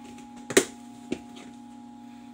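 Snap-on lid of a clear plastic storage tub being unclipped and pulled off: two sharp plastic clicks about half a second apart, the first louder, over a steady low hum.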